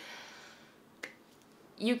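A pause in a woman's talk: low room tone broken by one sharp, short click about halfway through, before her speech starts again near the end.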